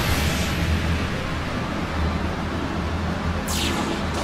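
Anime fight sound effects: a steady rush of noise over a low rumble, with a downward swoosh about three and a half seconds in.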